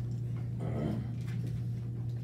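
Steady low hum of the room, with one brief pitched sound, like a squeak or a short vocal sound, about half a second in.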